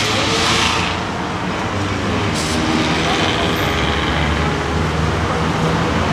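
Steady outdoor urban background noise, a low traffic-like rumble, with faint voices of people talking.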